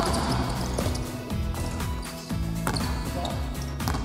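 A basketball dribbled on a hardwood gym floor during a one-on-one drive, over background music with a steady bass line.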